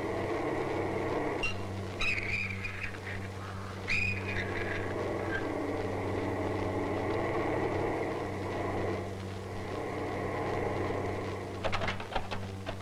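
A car engine running steadily as the car drives slowly and pulls up, with a few short higher-pitched sounds about two and four seconds in and a few sharp clicks near the end.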